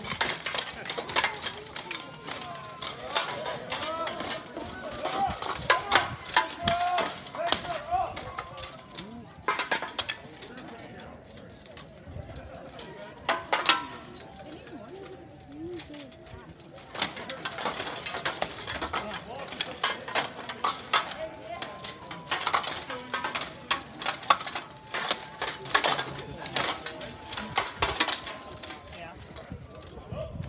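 Steel weapons striking steel plate armour in an armoured combat bout: irregular flurries of sharp clanging hits, with a lull about halfway through. Spectators' voices and shouts run underneath.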